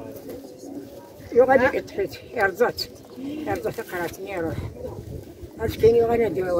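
A woman's voice speaking in short, wavering phrases with pauses between them.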